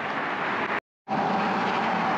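Steady road-traffic noise from vehicles driving across the bridge, with a brief total dropout to silence a little under a second in.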